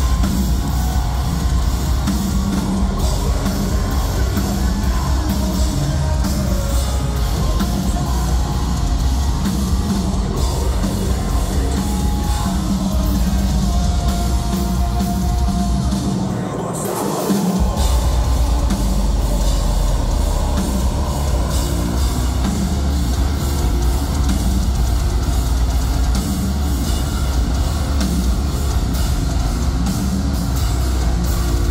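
Metalcore band playing live through a venue PA: distorted guitars, bass and drum kit, heard from within the crowd. Just past halfway the bass and drums drop out for about a second before the full band comes back in.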